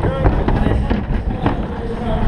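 Soapbox cart rolling down a wooden start ramp onto the road: a loud wheel rumble with clattering knocks, and wind buffeting the microphone.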